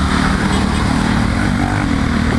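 Motorcycle engine running steadily at cruising speed, under a heavy rush of wind and wet-road tyre noise.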